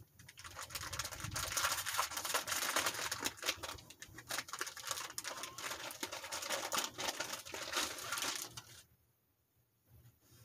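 Rustling and crinkling of gift packaging as a piece of cotton fabric is pulled out and handled, a dense run of small crackles that stops shortly before the end.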